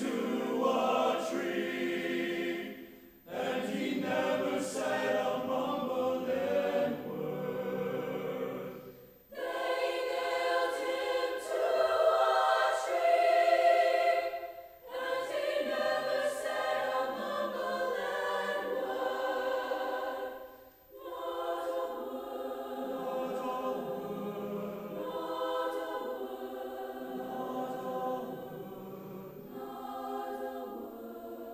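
Mixed student choir singing, in long phrases broken by short pauses about every six seconds, swelling to its loudest about halfway through before settling softer near the end.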